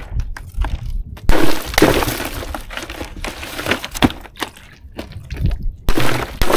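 Chunks of ice crunching and clinking in a styrofoam cooler as a gloved hand works through them, in a run of irregular cracks, loudest about a second and a half in.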